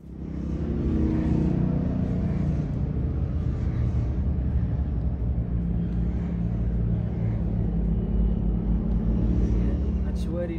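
Engines of several small off-road vehicles running out on an open plain, a loud steady low rumble that begins suddenly and holds throughout.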